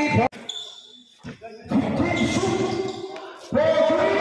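Basketball game sound on a covered court: voices shouting with long drawn-out calls, and a few ball bounces on the court. The sound drops out suddenly a fraction of a second in and jumps back loud shortly before the end, where the clips are cut together.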